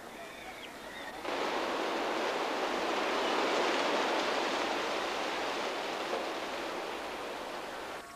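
A steady rushing hiss of water that cuts in abruptly about a second in and holds an even level.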